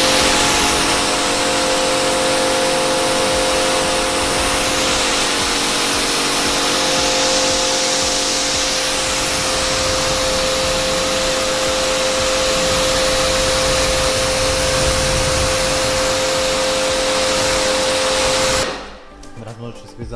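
Small electric pressure washer running: a steady motor-pump hum under the loud hiss of its water jet spraying onto a car's bonnet. It cuts off suddenly near the end.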